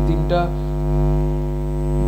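Steady electrical hum from a faulty microphone recording, a loud low drone with a buzzy stack of overtones that does not change. A brief scrap of speech comes right at the start.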